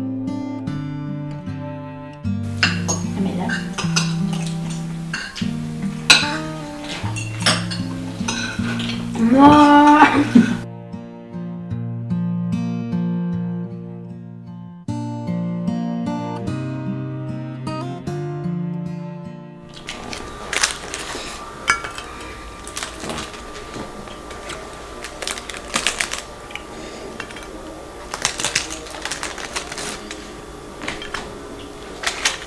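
Gentle background music with metal cutlery clinking on ceramic plates. A short rising tone about ten seconds in is the loudest moment. About two-thirds of the way through the music stops, leaving cutlery and dish clinks in a small room with a faint steady hum.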